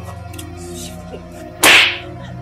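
A single hard slap across a man's face, one sharp, loud hit about a second and a half in, over soft steady background music.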